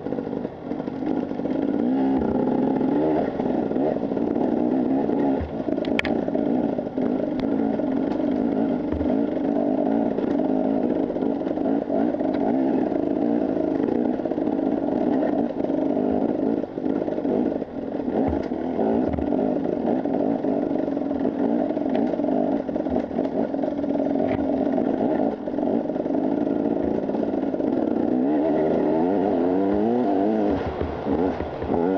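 Husqvarna TE 300 enduro motorcycle's engine running under fairly steady throttle while riding off-road, with the bike clattering over rough ground and a sharp knock about six seconds in.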